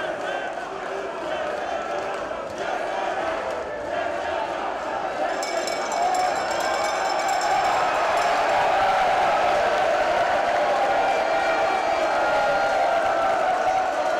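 Boxing arena crowd shouting and cheering, a dense wash of many voices that swells louder about six seconds in.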